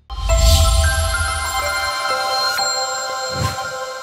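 Short electronic music sting for a news channel's logo. A deep bass hit and bright swell open it, then come held synth tones that change chord a few times, and a low thump near the end.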